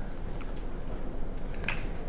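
Quiet room with a few faint, short clicks, one sharper click near the end.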